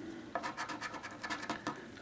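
Plastic poker chip scratching the coating off an instant lottery scratch-off ticket in a run of quick, short strokes.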